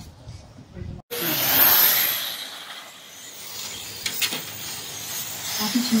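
Electric radio-controlled race car going past on the track: a hissing rush of tyres and motor that swells suddenly about a second in and fades away over the next couple of seconds.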